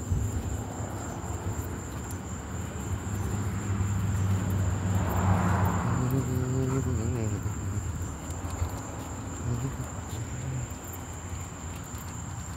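Night insects trilling in one steady, high, unbroken tone. A low hum swells through the middle and fades again.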